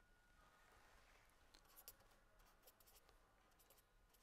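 Faint scratching of a pen writing by hand on paper, in short strokes starting about a second and a half in, over near-silent room tone.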